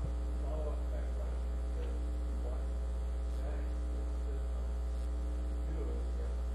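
Steady low electrical mains hum on the audio line.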